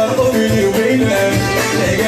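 Live Moroccan chaabi music played on an electronic keyboard: an ornamented melody over a steady programmed drum beat, with a man singing.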